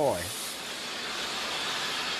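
Steam boiler being blown down: steam and water rushing out through the blowdown valve in a steady hiss, clearing the sediment that forms in the bottom of the boiler.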